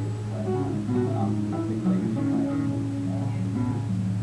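Acoustic guitar picking out a short melodic riff of single notes and chords, one note held a little longer in the middle, over a steady low hum.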